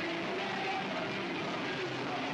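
Hardcore punk band playing live, heard as a steady, dense wash of distorted electric guitar.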